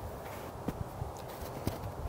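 Low, steady outdoor background noise with a few soft, irregularly spaced clicks.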